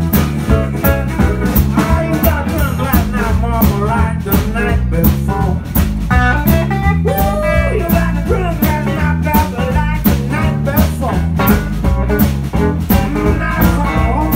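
Live electric blues band playing: electric guitar, electric bass and a drum kit on a steady beat, with a voice singing over it.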